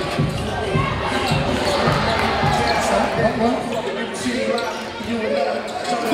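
Basketball dribbled and bouncing on a hardwood gym floor, a low thud about every half second, with indistinct voices in the echoing hall.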